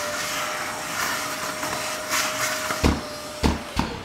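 Bosch GAS 55 M AFC wet vacuum running steadily, its motor hum held under a rush of air through the hose. Two thuds come near the end, then the motor's pitch starts to drop.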